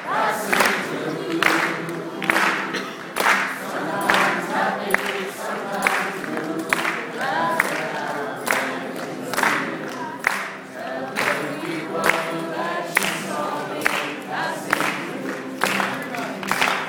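Many voices singing a slow song together in chorus, a crowd sing-along, with sharp claps keeping a steady beat a little more than once a second.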